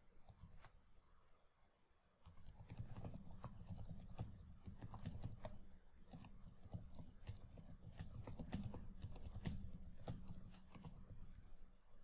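Computer keyboard typing: a few scattered keystrokes, then a steady run of quick key clicks from about two seconds in, faint.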